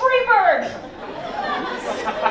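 Speech: a man talking into a stage microphone, his voice falling in pitch in the first half-second.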